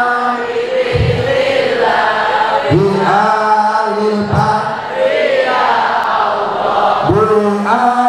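Voices chanting a sholawat, an Islamic devotional song praising the Prophet, in long melodic phrases that rise and fall, with a few low thumps under the singing.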